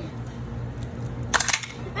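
A plastic action figure slammed down onto a small plastic toy table, which clatters apart in a quick run of sharp clicks about a second and a half in.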